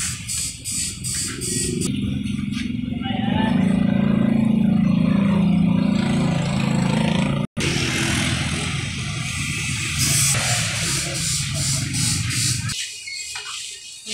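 Street traffic with motor scooters riding past close by, their engines loudest in the middle. The sound breaks off abruptly twice.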